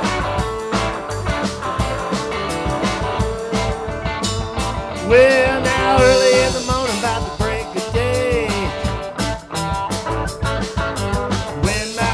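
Live blues-rock band playing: electric guitars over a steady drum beat, with a long, bending, wavering melody line coming in about five seconds in.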